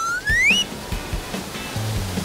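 Background music with a steady bass line under a transition sound effect: a whistle-like tone that swoops back up in pitch and ends about half a second in.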